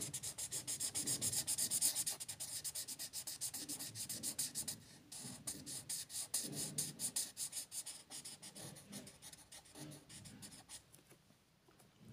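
Felt-tip marker scratching on paper in rapid back-and-forth strokes while colouring in a shape. The strokes grow fainter after about five seconds and stop shortly before the end.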